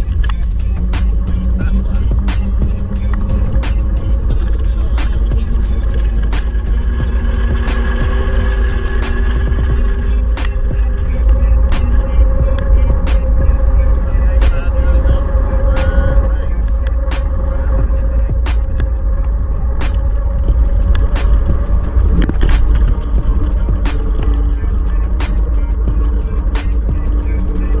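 Music, likely a song laid over the footage, with a constant low rumble underneath and many short sharp clicks running through it.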